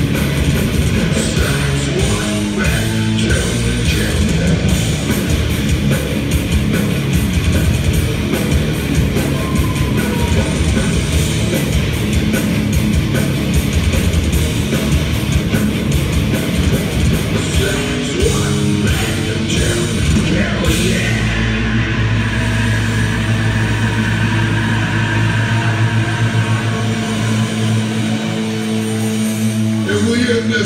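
Heavy metal band playing live and loud through a concert PA: distorted electric guitars, bass and drum kit, heard from within the crowd. About twenty seconds in the drumming thins out and the band holds a long sustained chord.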